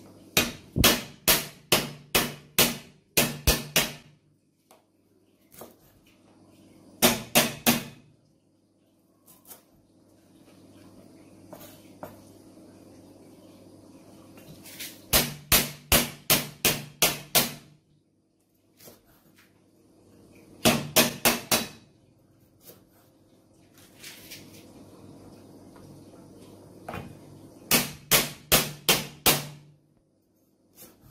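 Kitchen knife chopping lemongrass stalks on a thick round wooden cutting board: five runs of quick, sharp knocks, about four a second, with pauses between them. A low steady hum sits underneath.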